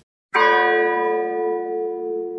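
A single struck bell: a sudden strike about a third of a second in, then one long ringing tone with many overtones that fades slowly.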